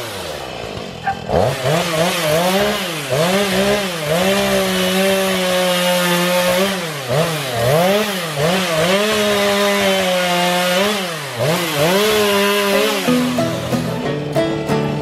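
Two-stroke chainsaw cutting cedar limbs, its engine revved up and dropped back about once a second and held at full speed for stretches of a second or two while the chain bites. It cuts off about a second before the end.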